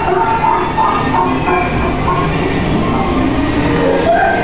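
A steady rolling mechanical rumble, with music fainter beneath it.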